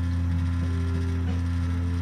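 Steady low electrical hum, the mains hum carried on the recording, with several fainter steady tones above it and no change through the pause.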